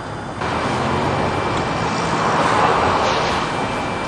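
Road traffic outdoors: a vehicle passing close by, its tyre and engine noise swelling to a peak a couple of seconds in and then easing off.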